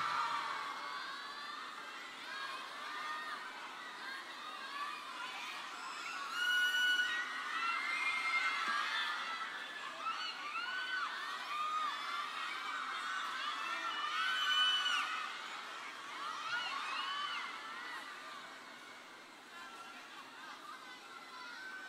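Concert audience of fans shouting and cheering between songs: many high voices call out over one another. The crowd swells twice, about six seconds in and again near fourteen seconds, then dies down near the end.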